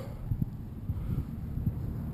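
Wind buffeting the microphone of the tricopter's onboard camera, a low irregular rumble, with a few faint knocks from the frame being handled.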